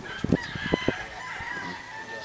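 A rooster crowing, with a few sharp knocks in the first second.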